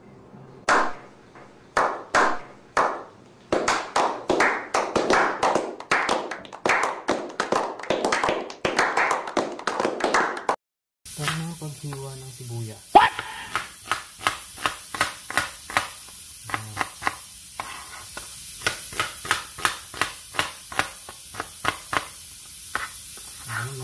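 A run of sharp claps that comes thicker and faster and stops abruptly about ten seconds in. Then a kitchen knife slices through a red onion, each cut tapping the plastic cutting board, about two taps a second.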